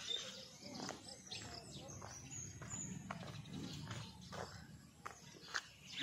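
Quiet outdoor ambience: faint footsteps on a concrete path, with thin, high bird chirps about two to three seconds in.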